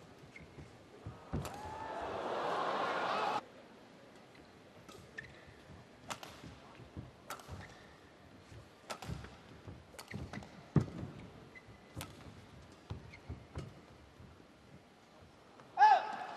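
A badminton arena crowd shouting and cheering for about two seconds early on, cutting off suddenly. After that come sharp, scattered hits of rackets on the shuttlecock and thuds of players' feet on the court during a rally.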